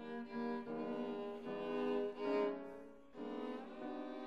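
Violin and viola playing held bowed notes together in a contemporary chamber piece, entering suddenly and fairly loudly at the start. A string of sustained notes swell and break off, with a brief drop about three seconds in and a short sliding note near the end.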